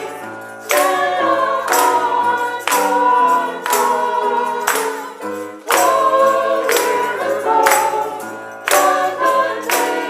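A small church choir singing a hymn in phrases a second or two long, over steady held low notes.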